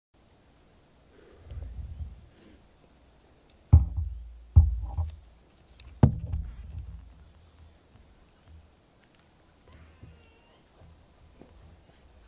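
Three loud, sharp thumps, each with a deep boom trailing after it, a little under a second apart a few seconds in; faint high chirps near the end.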